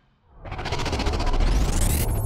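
Produced outro sound effect: after a brief near-silence, a whoosh with a fast flutter starts about half a second in over a deep low rumble, with a pitch sweeping upward near the end as the logo end card comes in.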